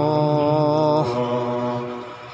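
Male Qur'an reciter chanting in melodic tajwid style, holding one long steady note. About a second in, the note breaks off into a quieter, lower tone that fades away.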